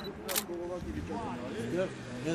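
Men talking, with one short, sharp click about a third of a second in.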